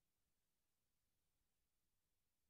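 Near silence: only a faint, even background hiss with no distinct sounds.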